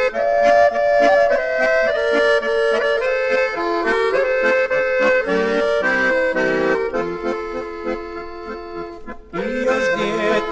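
Instrumental break in a 1964 Bosnian sevdalinka recording: an accordion plays a melody of held, stepwise notes. It dips briefly near the end, then a fuller phrase comes in.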